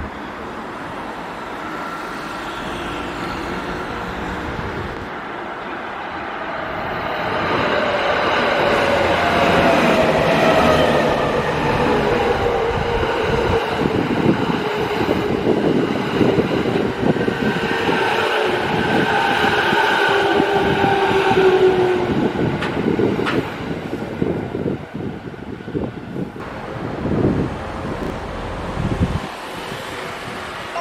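JR East E217 series electric commuter train pulling into a station and braking. Its motor whine is several tones that fall steadily in pitch as it slows, over the clatter of wheels on rail joints, and it turns rougher and quieter near the end as it draws to a stop.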